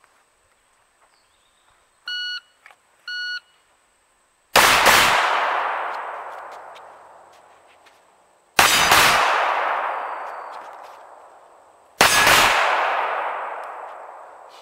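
A shot timer beeps twice about a second apart to start the run. Then come three bursts of pistol fire, about four seconds apart, each a quick double tap, with each burst ringing out and fading slowly before the next.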